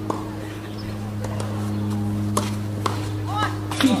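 Tennis court ambience between points: a steady low electrical hum with a few short, sharp taps spread through it, and a voice starting near the end.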